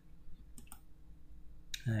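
A couple of faint, sharp computer mouse clicks over low room hum. A man's short 'ai' ends it.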